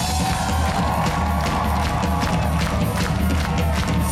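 Live ska-rock band playing a stretch without vocals: a steady drum-kit beat over a low bass pulse.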